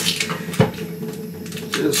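Kitchen knife cutting an onion on a wooden cutting board: one sharp knock about half a second in, then a couple of lighter clicks near the end.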